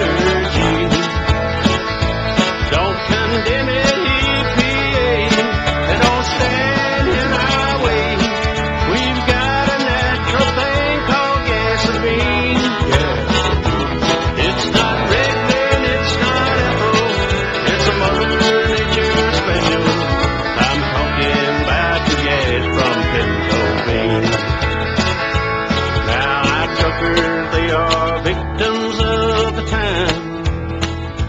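Instrumental break of an upbeat country song: a band with guitar lead over a steady bass and drum beat.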